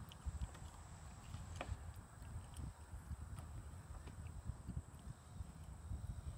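Faint outdoor ambience: uneven wind rumble on the microphone, with a few scattered light knocks and a thin steady high whine throughout.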